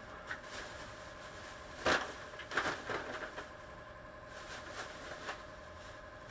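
Thin plastic bag crinkling and rustling as it is handled and opened by hand. The sharpest crinkle comes about two seconds in, followed by a run of smaller crackles and a softer rustle later, over a faint steady hum.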